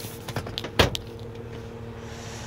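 A few light clicks, then one solid clunk a little under a second in, from the Jeep Wrangler's folding rear seatback being moved and latching. A steady low hum runs underneath.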